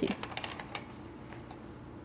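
A kitten rummaging with its head inside a paper shopping bag: faint paper rustles and light crinkling clicks in the first second, then quieter.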